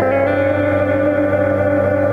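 Electric guitar played through effects pedals in a live instrumental passage, several notes held steady over a sustained low note.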